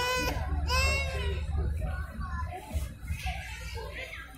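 A young child's high-pitched, wavering vocal cry, loudest about half a second to a second in, followed by fainter voice sounds.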